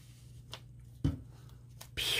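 A few faint clicks and a soft knock from hands handling a plastic bottle of adhesive remover and paper planner pages, with a short "oh" about a second in.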